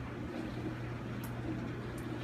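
A steady low hum with a faint tick about a second in.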